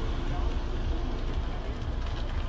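Faint, unintelligible shouting from a man some distance away, over a steady low rumble of outdoor noise.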